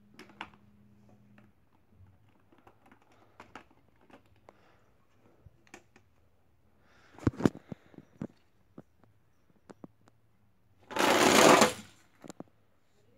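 Small clicks and knocks of toy monster trucks being handled and set in place, with a short rattle about halfway through. Near the end comes a loud rolling rush lasting under a second: the toy trucks running down the race track.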